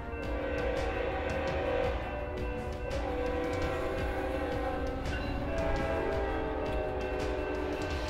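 A locomotive air horn blowing long held chord blasts over dramatic soundtrack music, with a low rumble beneath. The horn's tones sag slightly in pitch about five seconds in.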